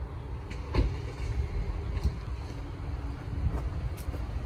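Low, steady rumble of a vehicle engine running nearby on the street, with a faint steady hum and a few light knocks.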